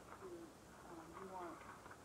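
Faint, muffled voices talking on a microcassette recording, over steady tape hiss.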